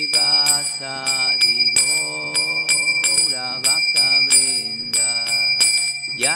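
A man sings devotional prayers in long, held notes. Ringing, bell-like metal percussion is struck in a steady beat of about two to three strikes a second, its tone ringing on between strikes.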